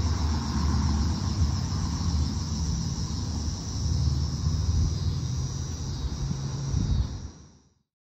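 Steady high-pitched chirring of insects on a summer evening lawn, with a low rumble underneath; both fade out about seven seconds in.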